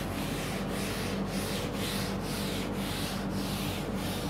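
Chalkboard eraser being rubbed back and forth across a chalkboard, wiping off chalk drawings, in even strokes about two a second.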